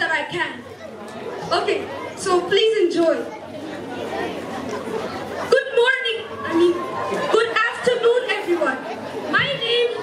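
Several people talking at once: a chatter of voices.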